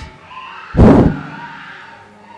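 A single loud shout or cry from a person, about a second in, short and strained.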